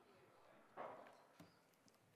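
Near silence: room tone, with one faint brief sound a little under a second in and a soft click shortly after.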